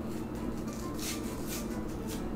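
A small mac-and-cheese powder packet crinkling and tearing as it is pulled open by hand, in a few short, faint rasps about a second in.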